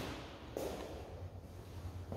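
Quiet room tone with one faint soft knock about half a second in.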